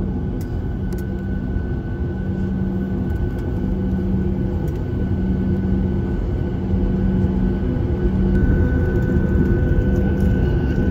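Jet airliner cabin noise: the engines run with a steady hum and a couple of held tones as the plane moves on the ground, growing slowly louder.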